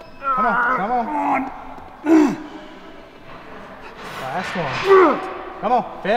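A man groaning with strain four times, the first and third long and wavering, the others short, as he grinds out spotter-assisted forced reps of preacher curls past muscular failure.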